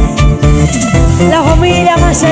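A live band playing with a bandolin lead. A plucked, gliding melody runs over a drum kit and keyboards keeping a steady beat.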